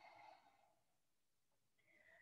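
Near silence, with a faint breath out in the first half-second and a faint breath in near the end.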